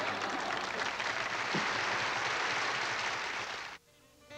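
Sitcom studio audience applauding after a punchline, a dense steady clapping that cuts off suddenly near the end at a scene change.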